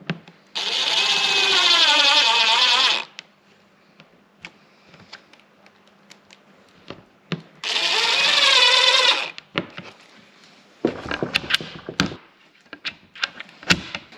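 DeWalt XR cordless drill-driver running twice, about two seconds each time, its motor pitch wavering under load as it drives screws fixing a door catch into plywood. A few sharp clicks and knocks follow near the end.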